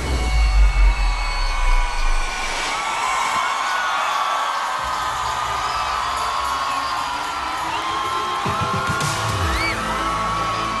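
A deep boom in the first two seconds, then a concert crowd screaming and cheering in long, high-pitched shrieks over music.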